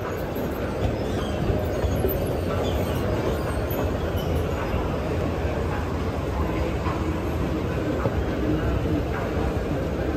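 Steady low rumbling noise with a few faint clicks.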